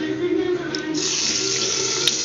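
Hot oil in a steel kadai bursting into a steady sizzle about a second in, as chopped green chillies go into it.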